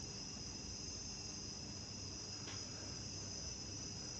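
Steady, high insect chirring in the background, continuous and unchanging, with a faint room hiss beneath.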